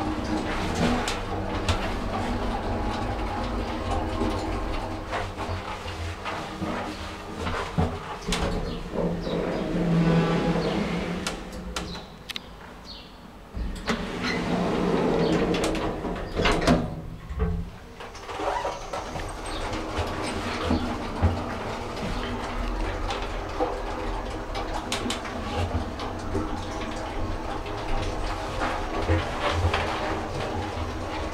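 Inground hydraulic passenger lift in operation: a steady hum from the machinery while the car travels, with the lift's multi-panel automatic sliding car doors moving partway through.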